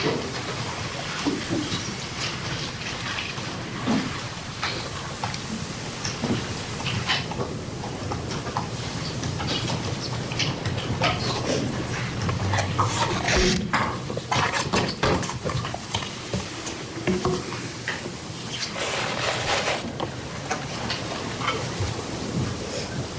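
A recorded 911 phone call played back over courtroom speakers: a hissy, muffled phone line with clusters of sharp bangs and clatter, which are the gunshots the caller heard at the start of the call.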